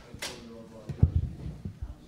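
A brief rustle, then a series of dull knocks and bumps, loudest about a second in, with faint voices in the room.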